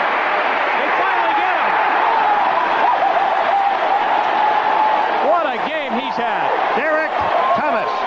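Football stadium crowd roaring and cheering. From about halfway through, many individual voices shout out over the roar.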